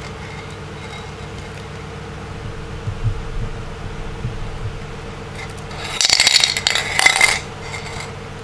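Aluminium foil and plastic wrap around an empty paint can crinkling as the can is handled, loudest in a dense crackle of about a second and a half near the end, with softer rustles earlier. A steady low hum runs underneath throughout.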